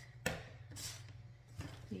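One sharp click of a tool or object being handled on a tabletop, followed by a brief soft rustle, over a steady low hum.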